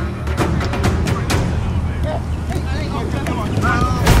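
Background music with a heavy, steady bass and sharp drum hits, with faint voices in the second half.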